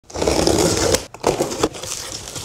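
Packing tape on a cardboard box being slit open, then the cardboard flaps pulled back. A loud, rasping stretch lasts about a second, followed by a few short scrapes and rustles of cardboard.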